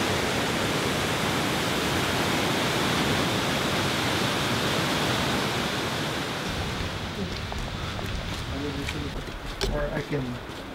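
Athabasca Falls: a steady, loud rush of white water pouring into a rock gorge. About six and a half seconds in, the rush drops to a fainter hiss with a few scattered clicks and faint voices.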